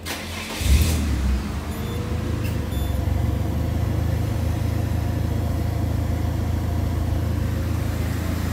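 Peugeot 206 petrol engine started with the key: the starter cranks briefly and the engine catches about a second in, then settles into a steady idle.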